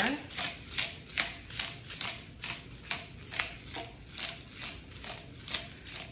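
Hand-twisted glass seasoning grinder grinding, a steady run of short crunching strokes at about three a second.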